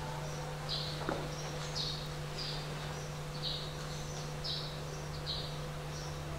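A small bird chirping repeatedly in the background: short, high chirps a little under one a second, over a steady low electrical hum.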